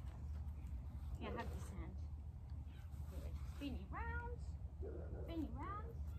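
Sheep bleating: two short calls in the second half, the first rising and then held.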